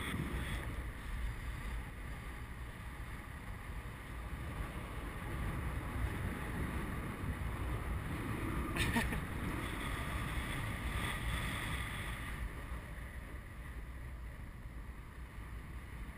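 Wind noise from the airflow over the camera microphone on a paraglider in flight, a steady low rush that swells and eases as the glider turns, with one short crackle about nine seconds in.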